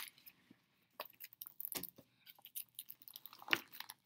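Faint, irregular clicks and small taps, a few a second, with a louder one about three and a half seconds in.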